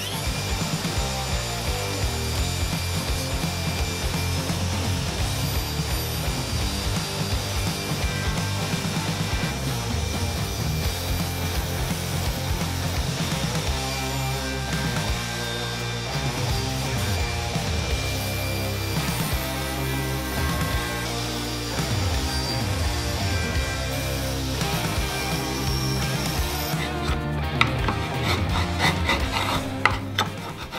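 Table saw cutting dados across plywood boards on a crosscut sled, under background music.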